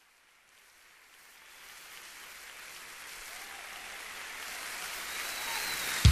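Applause from the audience of a live worship concert recording, fading in from silence and growing steadily louder.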